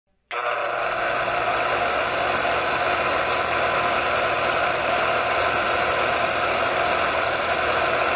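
Film projector running: a steady mechanical whir with a fine, rapid rattle, starting abruptly just after the beginning.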